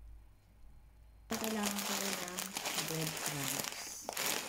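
Plastic packaging crinkling as it is handled. It starts suddenly about a second in, after a quiet start.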